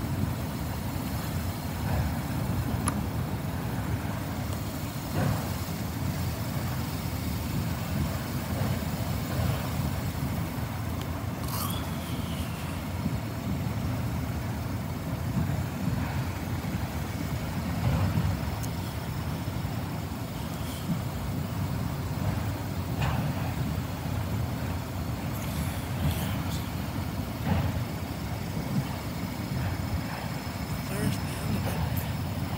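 Freight train of autorack cars rolling past: a steady low rumble of steel wheels on the rails, with scattered clanks and a brief high squeal about twelve seconds in.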